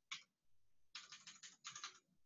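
Faint computer keyboard keystrokes: a single tap near the start, then a quick run of key presses about a second in.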